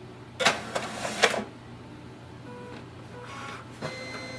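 A Brother DCP-L2640DW laser all-in-one printer starting a scan from its automatic document feeder. A few sharp clicks and short mechanical whirs come about half a second to a second and a half in. After that the mechanism runs quietly and steadily with a faint whine, and there is another click near the end.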